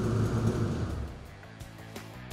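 Polaris Patriot Boost snowmobile's turbocharged two-stroke engine running at idle just after being started, a sign that the reinstalled battery is connected properly. It fades out about a second in, leaving soft background music.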